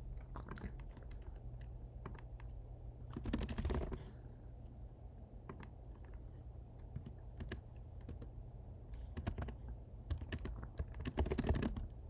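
Computer keyboard typing in short bursts: a quick flurry of keystrokes about three seconds in and another near the end, with scattered single keystrokes between.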